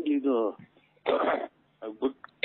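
A person's voice heard over a telephone line: a short utterance, then a brief rough, breathy vocal burst about a second in, and the start of more speech near the end.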